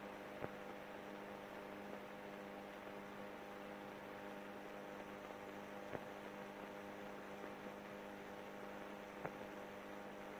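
Steady hum and hiss of a worn early-talkie soundtrack, with three faint clicks of crackle and no voices.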